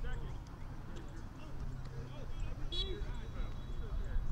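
Indistinct, distant voices of players talking on an open field, over a low steady rumble.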